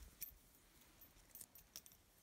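Near silence with a few faint clicks from an 18ct pink gold wristwatch on a leather strap being handled, taken off the wrist and held in the fingers.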